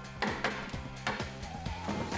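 Background music with a steady bass line, with a few sharp knocks about a quarter and half a second in.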